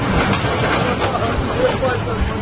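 A tank's engine and tracks running as it drives onto a parked car, with people's voices over it.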